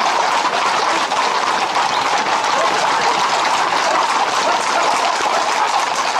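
A dense, steady din of a street crowd mixed with the hooves of many Camargue horses on the road as the mounted group and runners move along.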